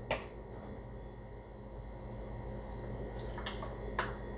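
Buttermilk pouring faintly from a carton into a measuring cup over a low steady hum, with a light click near the start and another near the end.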